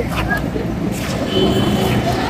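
Steady street background: a hum of passing road traffic with distant voices, and a faint high steady tone for about a second after the first second.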